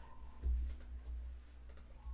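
Two computer mouse clicks about a second apart, with a low bump just before the first.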